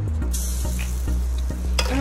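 A spoonful of cauliflower fritter batter sizzling in hot oil in a frying pan. The sizzle starts suddenly a moment in as the batter hits the oil, with a click near the end.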